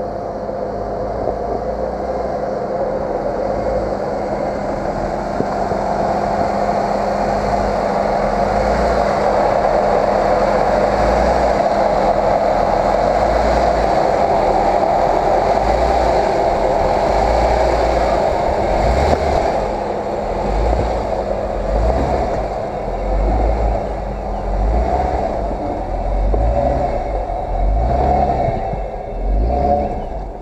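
Jeep Wrangler engine running at crawling speed as the Jeep climbs over rocks close by, growing louder as it passes overhead. A few knocks of tyres and rock come near the middle, then the engine falls back to an uneven low rumble that rises and dips.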